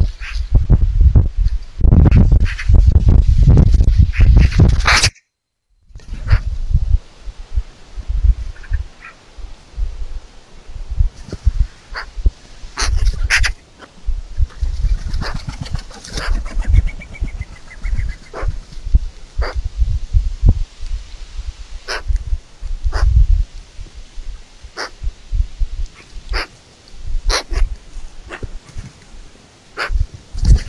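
Wind rumbling heavily on an outdoor camera's microphone, cutting out for a moment about five seconds in, with short harsh calls of Eurasian magpies scattered through, including a quick chattering run about halfway.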